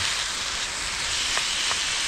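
Chicken and rice frying in a small frying pan on a camping stove: a steady sizzle with a couple of small pops in the second half.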